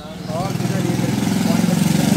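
Scooter engine running close by with a steady low throb, growing louder about a third of a second in. A short voice is heard near the start.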